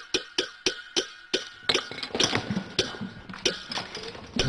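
A person making rapid, repeated muffled 'mm' sounds, about five a second, that turn into a more jumbled run of strained vocal noises about two seconds in.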